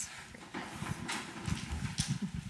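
Handling noise from a handheld wireless microphone being carried and passed along: irregular low knocks and rustling that grow busier about halfway through.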